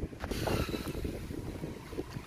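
A hand rummaging through a plastic box of loose metal screws and bolts, with a sharp click just after the start and a few faint ticks, over a low rumble of wind on the microphone.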